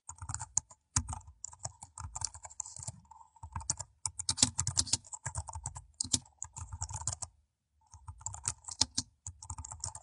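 Typing on a computer keyboard: quick key clicks in irregular runs, with a brief pause about three-quarters of the way through.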